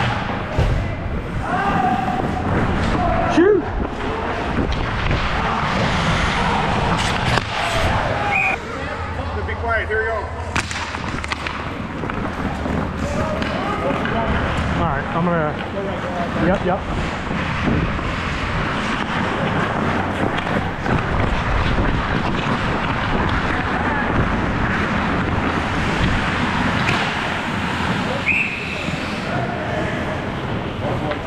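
Ice hockey play: skate blades cutting and scraping the ice, with thuds and clacks of sticks and puck and players' shouts. A short referee's whistle blows near the end as play stops.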